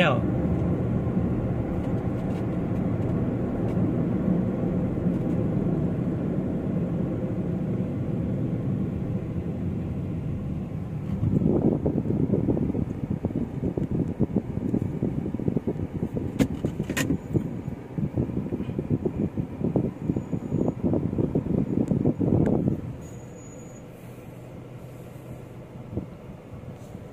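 Road and engine noise heard from inside a moving car: a steady low rumble that turns rougher and louder for about ten seconds in the middle. Near the end it drops much quieter as the car slows into a traffic queue.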